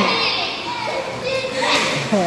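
Young children's high-pitched voices as they shout and play together in a swimming pool, with calls near the start and again past the middle.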